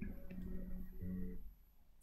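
Faint sound from a television's speakers, a few low steady tones, cutting off abruptly about one and a half seconds in as the TV switches off.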